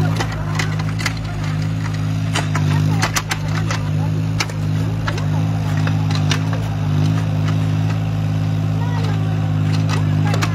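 Yanmar mini excavator's small diesel engine running steadily under hydraulic load while it digs soil, with scattered short clicks and knocks from the bucket and arm.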